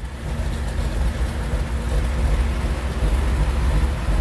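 A Ford 390 cubic-inch V8 with headers and glasspack mufflers running at a steady idle just after start-up, a deep, even low rumble.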